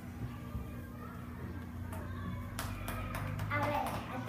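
Children's voices and movement on a classroom floor, with a few sharp knocks or claps from about two and a half seconds in, followed by a child speaking near the end.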